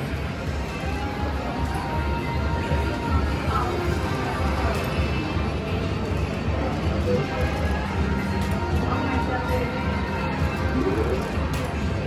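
Casino floor din: a video slot machine's electronic reel-spin tones and jingles, with other machines' music and background chatter under it, steady throughout.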